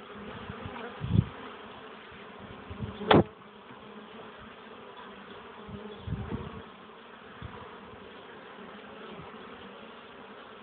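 Honeybees buzzing steadily en masse. A few low bumps break in: about a second in, a sharp knock at about three seconds (the loudest), and another around six seconds.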